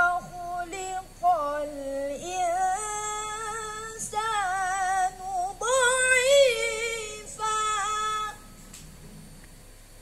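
A boy reciting the Qur'an in the melodic tilawah style, his high voice carried in long phrases with wavering, ornamented pitch and short breaths between them. The last phrase ends about eight seconds in, leaving a pause.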